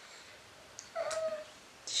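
A baby makes one short, high cooing sound about halfway through; the rest is quiet room tone.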